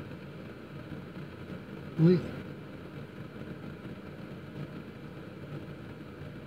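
Steady low hum of a vehicle engine idling, heard from inside the cab. About two seconds in there is one short voiced sound from the man.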